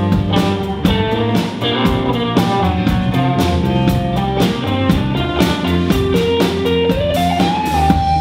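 Live rock band playing an instrumental passage: electric guitars and bass over a drum kit. Near the end one note slides up and is held.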